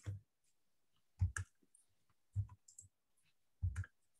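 About half a dozen quiet, short clicks and knocks, spread out, from a computer mouse being clicked to advance a presentation slide.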